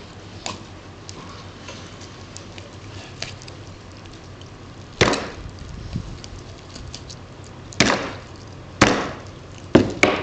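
A blade chopping down onto a cutting board while a chicken carcass is cut up: four sharp strikes in the second half, the last three about a second apart, with a few faint knife clicks before them.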